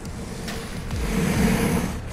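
Street traffic noise: a steady hiss with a low rumble that swells to a peak about a second and a half in, then fades.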